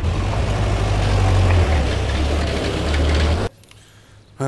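Engines of old jeeps running with a steady low rumble, cutting off suddenly about three and a half seconds in.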